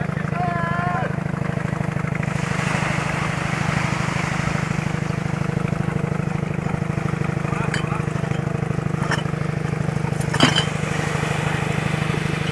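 An engine running steadily at idle, an even low hum with a fine regular pulse that doesn't change. A rushing hiss joins in after about two seconds, and a few sharp clicks come near the end.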